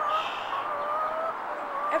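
Domestic hen making long, slightly wavering drawn-out calls in two or three stretches of about a second each, over a steady background hiss.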